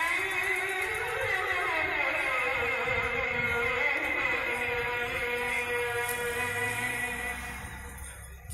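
A sela chanted from a mosque minaret over its loudspeakers, ending on one long drawn-out note. The note slides up, then slowly down, holds steady and fades out near the end.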